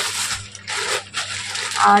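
Thin plastic carrier bag rustling and crinkling as it is handled, in a few noisy bursts; a woman's voice starts near the end.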